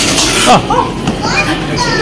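A woman's excited exclamations, "Oh! Oh!", as a capsule toy comes out of a coin-operated capsule machine. A loud steady rushing noise stops abruptly about half a second in.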